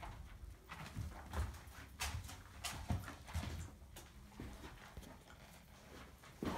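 Footsteps of a person walking across a carpeted landing: a series of irregular soft thuds, with the rub and knock of a handheld phone being carried.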